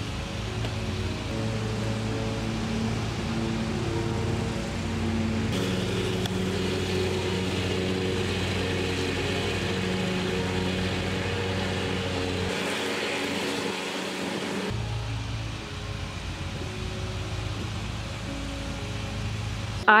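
Background music with steady, stepwise notes over the steady running of a commercial riding lawn mower's engine. The mower sound shifts abruptly about five seconds in and again near fifteen seconds.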